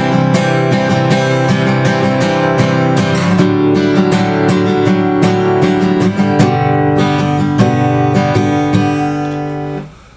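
Acoustic guitar strummed in a steady rhythm through a chord progression, changing chords about three seconds in and again later. The last chord rings out and fades just before the end.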